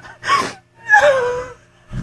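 A woman laughing hard in three high-pitched, gasping squeals, each sliding down in pitch, followed by a short low thump near the end.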